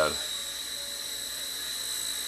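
Blade Nano CP S micro collective-pitch RC helicopter hovering: a steady high-pitched electric motor whine with rotor hiss.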